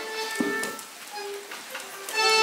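A quiet lull with a few brief, scattered instrument notes and a single soft knock.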